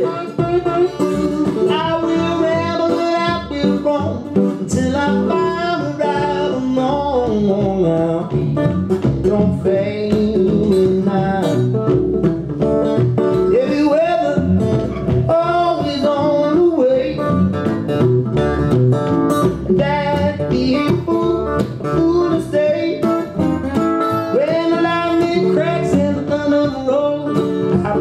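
Live acoustic blues: a lap slide guitar played with a slide bar, its notes gliding between pitches, over a plucked upright double bass.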